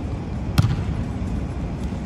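A basketball bouncing once on a hardwood gym floor about half a second in, a single sharp thud over a steady low rumble of the room.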